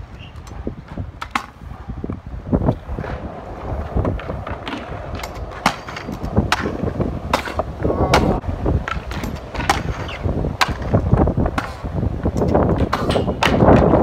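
Stunt scooter rolling on skate park concrete: a steady wheel rumble broken by many sharp clacks as the deck and wheels strike the ground and a ledge during trick attempts.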